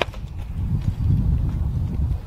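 Uneven low thuds and rumble on the camera's microphone, from footsteps and handling as the camera is carried across a lawn, loudest about a second in.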